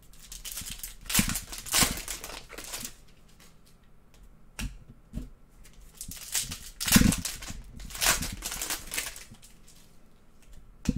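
Foil trading-card pack wrappers torn open and crinkled by hand, in two stretches of rustling with a couple of light clicks between.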